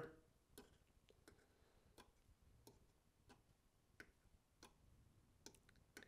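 About a dozen faint, irregularly spaced clicks from a six-wire electronic expansion valve (EEV) as 12-volt DC pulses are tapped by hand onto its coil terminals with a test probe. The stepper coils are being pulsed out of sequence, which makes the valve jog back and forth instead of turning steadily.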